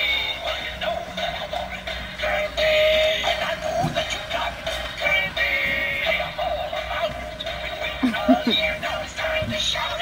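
Animated Halloween pumpkin decoration with Venus-flytrap heads singing a song through its small built-in speaker. The sound is thin and tinny.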